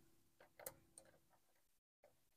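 Near silence, with a few faint clicks of a key being worked in a door lock that it won't open, in the first second.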